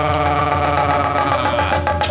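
Sundanese gamelan ensemble playing the accompaniment to a wayang golek performance: struck metal instruments ring on in many steady, slowly fading tones, with a sharp percussive stroke near the end.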